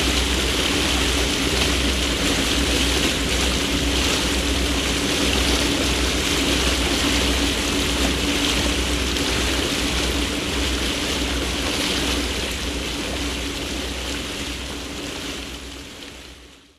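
Motorboat under way: a steady engine drone under rushing water and wind noise, fading out over the last few seconds.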